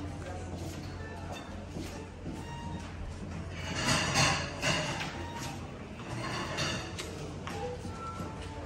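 Background music over a murmur of voices and a steady low hum, with a louder burst of noise about four seconds in.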